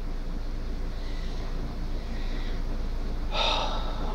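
A person's short, noisy breath near the end, over a steady low background hum.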